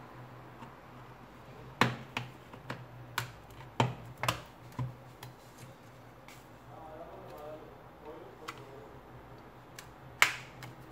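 Sharp, light clicks and taps, about a dozen scattered irregularly, as steel tweezers and fingers work against the plastic shell of a Samsung Galaxy Tab 3 tablet, over a low steady hum.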